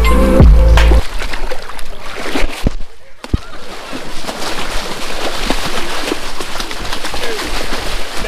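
A music track with a heavy bass line stops abruptly about a second in. After a short lull, water splashes and sloshes steadily as someone wades fast through a shallow river.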